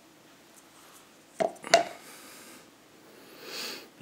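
Small handling sounds: two short clicks about a third of a second apart a little before halfway, then soft hissing noise that swells briefly near the end.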